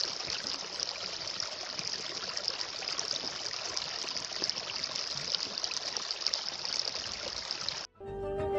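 Running water of a stream, a steady rushing and trickling that cuts off abruptly just before the end.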